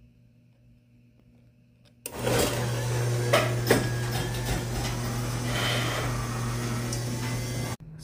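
Chamberlain HD220 garage door opener triggered by shorting its wall-button terminals: about two seconds in, its motor starts and drives the door with a steady hum and rattle and a couple of clicks, then stops suddenly just before the end.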